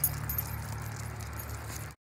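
Small metal jingling of dog collar tags and leash clips as leashed dogs walk, in quick irregular little clinks over a steady low rumble. The sound cuts off just before the end.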